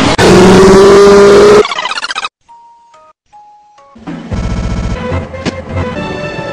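Edited sound collage: a very loud, clipped burst with a held tone for about a second and a half, a brief stutter, then near silence broken by a few short electronic beeps. About four seconds in, music starts and a person laughs.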